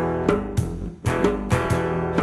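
Live acoustic band playing an instrumental passage on guitar with bass, the notes plucked and strummed. The playing drops away briefly about a second in, then comes back.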